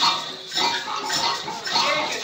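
Hand percussion from a group drumming session, with rattling shakers or jingles over a steady beat of about two strokes a second.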